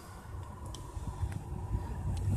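Low, steady rumble of a car's engine and tyres heard from inside the cabin while the car creeps along in slow traffic, with a few faint clicks.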